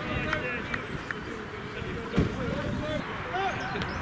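Indistinct shouting from rugby players and spectators on the pitch, with no clear words, and a single dull thump about two seconds in.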